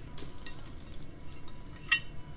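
Vernonware pottery dish handled and turned over, with small clicks of handling and one sharp ceramic clink near the end.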